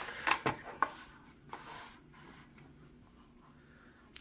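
Hands handling a plastic earbud charging case and its cardboard sleeve: a few light taps in the first second, then a short soft rub as the case slides out of the sleeve.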